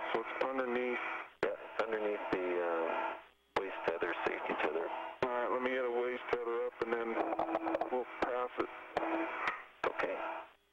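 Voices over a narrow-band spacewalk radio loop, hard to make out, with frequent sharp clicks from the link.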